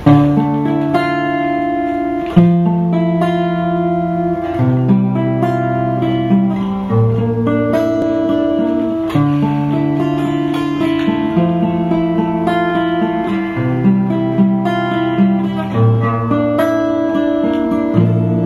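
Solo acoustic guitar playing an instrumental intro: picked chords with a bass note that changes about every two seconds and higher notes repeating above it.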